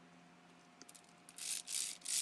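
Quiet room with a low steady hum, then, from a little past a second in, a rhythmic rattling of something shaken or rubbed, about three shakes a second.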